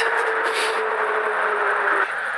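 Wind rushing over the microphone and road noise from an Ariel Rider X-Class e-bike on the move. A steady whine from its rear hub motor sinks slightly in pitch as the bike slows, then stops suddenly at the end.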